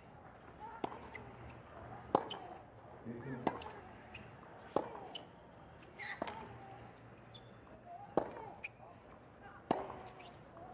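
Tennis rally on a hard court: the ball is struck by rackets about seven times, roughly every one and a half seconds, each hit a sharp pop, with fainter ball bounces between hits. There are short grunts from a player on some strokes.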